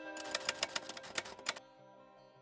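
Typewriter key strikes: a quick run of about a dozen clacks that stops about a second and a half in, typing out an on-screen caption.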